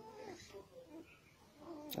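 Faint, short whimpering squeaks from a young puppy, with a sharp click near the end.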